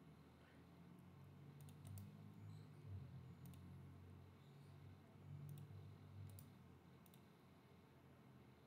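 Faint computer mouse clicks, about eight sharp single clicks spread over several seconds, some in quick pairs, over a low steady hum of room tone.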